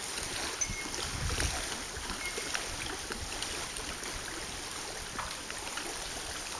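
Small waves lapping at the lake shore and dock, a steady wash with scattered light splashes and ticks. A gust of wind rumbles on the microphone about a second in.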